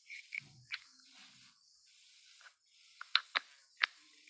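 Faint hiss of a live-stream audio feed on a failing internet connection, cutting in and out, with scattered sharp clicks; a quick run of four clicks near the end is the loudest.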